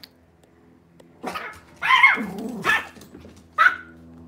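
A pet dog barking about four times, starting about a second in; the second bark is longer and bends in pitch.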